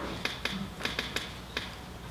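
About six sharp, irregularly spaced clicks of a laptop being worked by hand, keys or trackpad pressed in quick succession.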